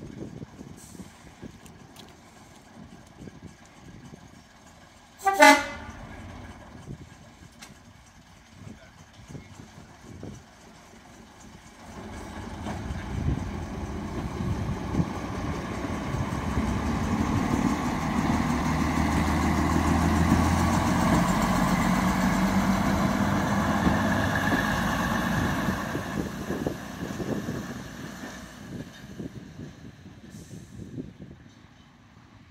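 Derby Lightweight diesel multiple unit car gives one short horn toot about five seconds in, then its underfloor diesel engines work as it pulls past, growing louder to a peak around twenty seconds in and fading as it moves away.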